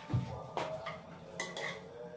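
A metal spoon scraping and clinking against a glazed ceramic plate as hot steamed couscous is stirred and worked by hand, in about three separate strokes with a low thump at the start. The spoon is used because the couscous is still too hot to work with bare hands.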